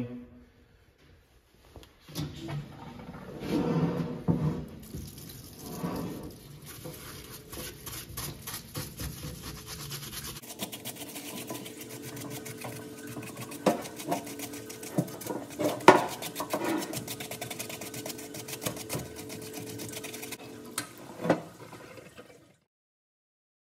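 Cleaning solvent pouring and splashing from a parts washer's flow-through brush as a hydraulic cylinder is scrubbed in the steel tub, starting about two seconds in. A steady hum joins about halfway through, and there are a few sharp knocks of the cylinder and brush against the tub.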